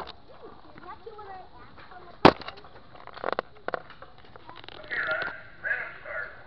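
A single sharp, loud knock about two seconds in, followed by a few softer clicks and rattles, with brief voices about five and six seconds in.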